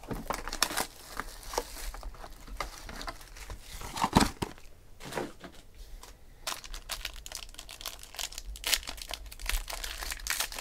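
Foil wrapper of a Topps Inception card pack crinkling as it is handled, then torn open near the end, with a single thump about four seconds in.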